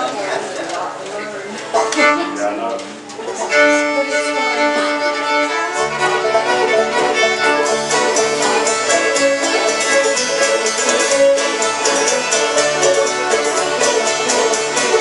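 An old-time string band of several fiddles, banjo, guitar and upright bass. The players noodle loosely for the first few seconds, then the fiddles settle into a tune about three and a half seconds in, and the upright bass joins a couple of seconds later.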